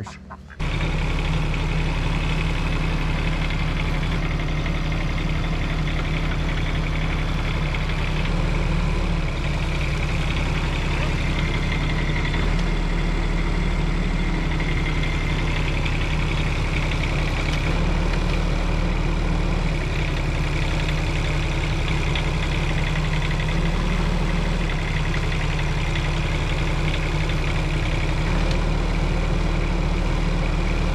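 Bobcat E10 mini excavator's diesel engine running steadily under load as the machine tracks forward and back, its low hum shifting in level several times as the travel levers are worked.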